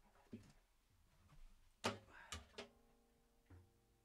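Near silence in a quiet room, broken by a few sharp knocks, the loudest about two seconds in with two more right after it; a faint steady hum begins just after them.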